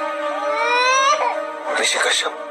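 An infant crying: a rising wail in the first second, then a harsher cry near the end, over a steady drone of background music.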